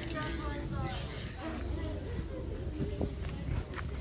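Indistinct voices of people talking, over a steady low hum and a few short clicks.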